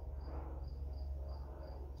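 A cricket chirping steadily: short, high-pitched chirps at about four a second, over a low steady hum.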